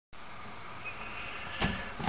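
Faint steady background hiss, with one short knock about one and a half seconds in.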